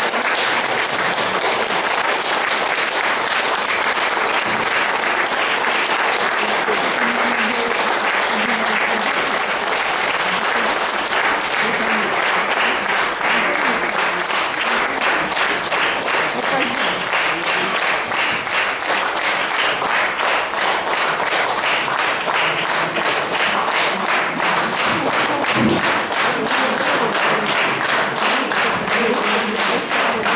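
Concert audience applauding at the end of a song: dense, steady clapping that sets in all at once and keeps up at an even level.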